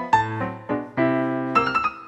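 Solo piano playing a tango instrumental: a quick succession of struck notes and chords over held low bass notes.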